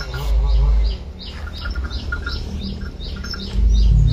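A small bird chirping over and over, a steady run of short, high chirps about three a second.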